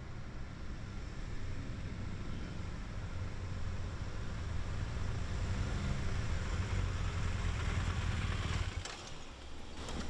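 Several police motorcycles riding up in a group, their engines running and growing louder over about nine seconds. The sound breaks off near the end and gives way to a steadier low idle.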